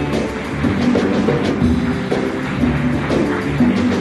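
Orchestra playing a song's instrumental introduction, with several pitched instruments over regular drum strikes.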